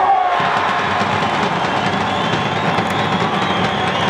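Football stadium crowd cheering, a dense, steady din.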